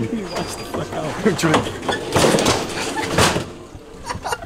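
Young men laughing hard, in breathy bursts with the loudest peaks about two and three seconds in, dying down near the end.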